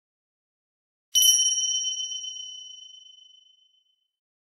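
A single bell-like 'ding' sound effect: one high-pitched metallic strike about a second in, ringing on and fading away over about two and a half seconds.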